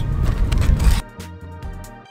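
Wind buffeting the microphone with a low rumble, cutting off suddenly about a second in. A few sharp clicks and scrapes follow as a cardboard shipping box is opened, with faint background music underneath.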